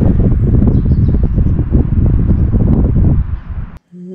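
Wind buffeting the microphone outdoors: a loud, low, irregular rumble that cuts off abruptly near the end.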